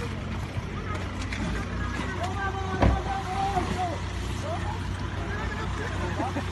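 Steady low hum of an idling vehicle engine, with voices talking in the background and a single knock about three seconds in.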